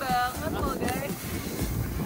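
Wind buffeting the microphone in a steady low rumble, with a short high-pitched voice sliding down in pitch at the start and a few brief vocal sounds within the first second.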